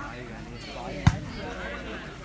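A volleyball being struck once about a second in, a single sharp slap over the chatter of voices.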